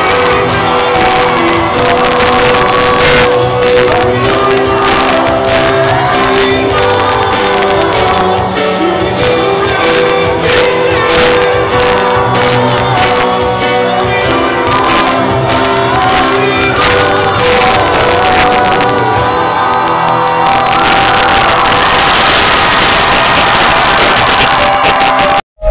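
Loud live band music heard from within the audience in a large hall: a singer over drums and guitars, with the crowd shouting and singing along. The sound grows denser and brighter about 20 seconds in.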